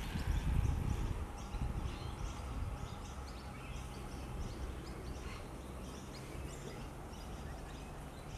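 Faint outdoor background: a steady low rumble with small, high bird chirps repeating in the distance.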